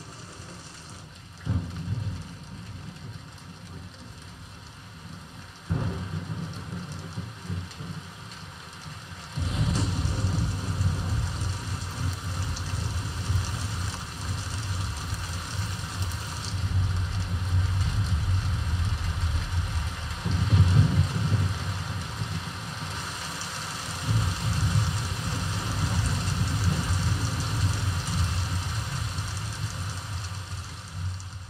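A rainstorm soundtrack from a Dolby Atmos demo trailer, played through a Denon DHT-S218 soundbar with a Polk Audio MXT12 subwoofer and picked up by a microphone in the room. Steady rain hiss runs throughout. Two sudden thunder cracks come early, then deep rolling thunder from about a third of the way in swells again twice near the end, the low end carried by the subwoofer.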